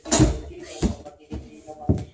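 A gymnast coming down from a home horizontal bar onto a padded mat: a loud thud just after the start, then a few further thumps of feet on the mat, the last and strongest near the end. Music plays underneath.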